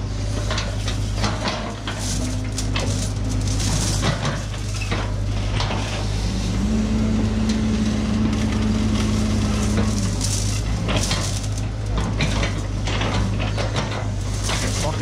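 Doosan DX140W wheeled excavator's diesel engine running steadily while its hydraulic crusher jaws squeeze and roll tangled scrap rebar into a lump, with repeated metal clanks and scraping. A steady, higher hum joins from about six and a half to ten seconds in.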